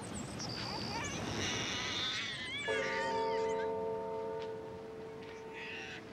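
Birds chirping and singing in quick high calls. A sustained musical chord comes in about two and a half seconds in and holds under them.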